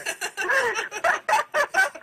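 People laughing heartily at a joke, a run of quick, pulsing laughs.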